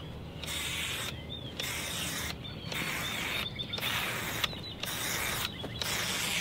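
Aerosol marking paint sprayed from an upside-down can on a wand applicator in a string of short hissing bursts, about one a second, marking a line on bare soil.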